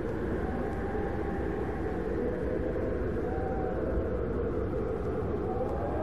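Steady wind-like rumble with a faint whistling tone that rises and falls a few times.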